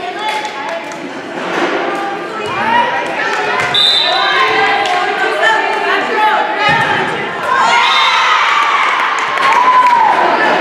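Volleyball rally in a gym: a short high referee's whistle blast about four seconds in, then thuds of the ball being struck, with players and spectators shouting and cheering that swells in the last couple of seconds as the point is won.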